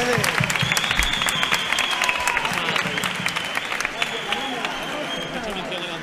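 Audience and performers applauding, with dense clapping that dies down near the end.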